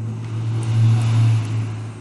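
A steady low hum under a rushing noise that swells to its loudest about a second in and then fades.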